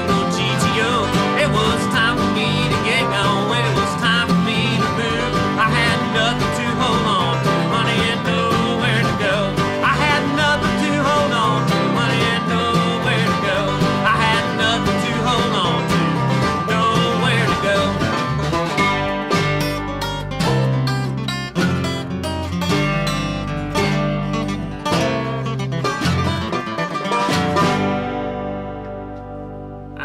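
A country-bluegrass band playing an instrumental passage on acoustic guitars, banjo, electric bass and snare drum. The playing thins to accented strokes past the middle, and the song ends on a last chord that rings out near the end.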